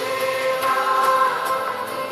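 Telugu Christian worship song performed live: a choir of voices holding long notes over band accompaniment.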